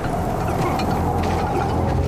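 Soundtrack ambience of an animated episode: a steady low rumble under an even hiss, with a few faint ticks.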